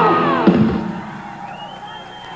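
A high held note with vibrato slides down in pitch and stops in the first half second. A live rock concert crowd then cheers, with a thin high steady tone coming in near the end.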